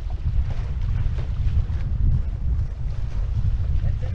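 Wind buffeting the microphone in an unsteady low rumble, over water rushing and spraying along the hulls of a sailing Viper catamaran.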